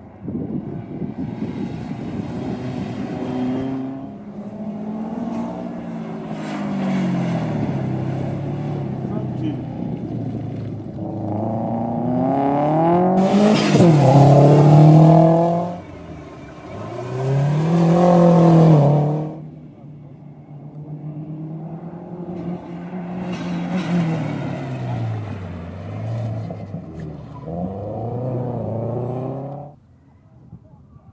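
Rally-prepared cars driven flat out through a cone slalom, first a red BMW E30 and then a red first-generation Subaru Impreza with its flat-four engine. The engine notes rise and fall over and over with throttle and gear changes, loudest as a car comes past near the middle.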